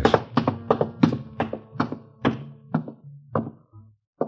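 Footsteps going down a flight of stairs, a radio-drama sound effect: a steady run of about nine footfalls that slow near the end.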